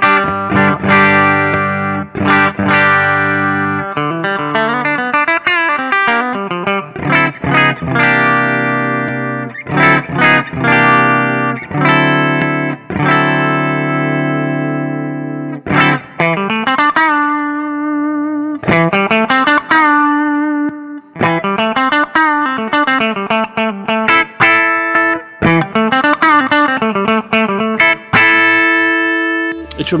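Electric guitar, a Charvel PA28 with PAF-style humbuckers, played into a clean PRS Archon amp model: picked chords and single notes ringing out with long sustain, with bent notes in the second half. An Isolate Audio Squash the Jam feedforward VCA compressor is bypassed at first, then switched on, compressing transparently and colouring the tone only a little.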